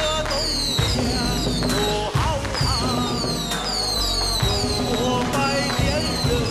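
Loud traditional temple ritual music: a gliding, pitch-bending melody over heavy percussion hits roughly every second, with a held steady note near the end.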